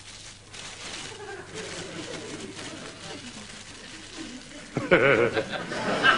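Faint laughing and voices for most of the stretch, then loud laughter breaking out about five seconds in.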